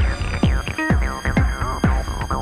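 Acid house dance music from the DJ's decks through a PA speaker: a steady four-to-the-floor kick drum about twice a second, with swooping, falling synth sweeps between the beats.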